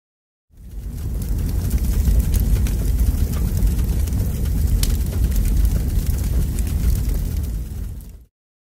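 Fire-and-rumble sound effect for a flaming logo animation: a deep, steady rumble with scattered crackles that comes in about half a second in and cuts off at the end.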